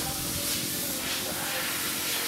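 A steady hiss with a faint low hum underneath.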